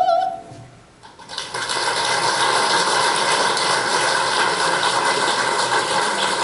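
A soprano's final held note, sung with wide vibrato, ends just after the start. After about a second of near-quiet, an audience breaks into steady applause.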